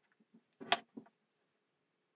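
Kitchen knife slicing through a raw potato and striking the cutting board: one short, sharp cut a little under a second in, then a lighter knock as the cut piece lands on the board, with faint small ticks before.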